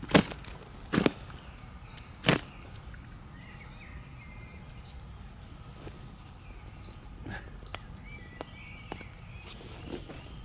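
A large carp kicking its tail while held over a wet unhooking mat: three sharp slaps in the first two and a half seconds. After that, faint bird chirps over a quiet outdoor background.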